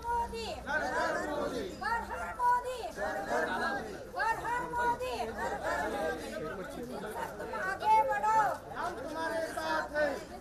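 Several people's voices talking over one another: the chatter of a group walking together.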